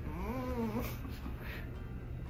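A man's short pained groan, rising then falling in pitch and lasting under a second, as the muscles around his collarbone are pressed and worked during a massage.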